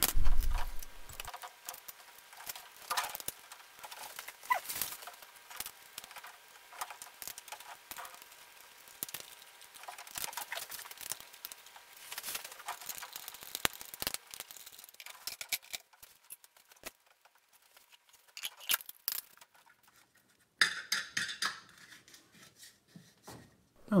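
Scattered light metallic clinks and taps of hand tools and fittings as a carburetor is bolted back onto an engine's intake manifold, with a denser stretch of rattling near the end.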